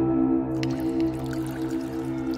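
Ambient music of sustained, droning tones, with water trickling and dripping under it. The drips begin about half a second in.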